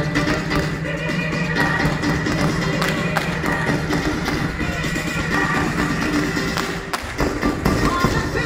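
Loud recorded music playing through the display, with sharp crackles and pops from ground fireworks firing sprays of sparks.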